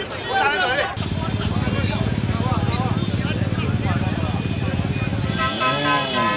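Protesters' voices briefly, then a motor scooter or motorbike engine running close with a fast, even firing beat. Near the end, vehicle horns sound with held, wavering tones.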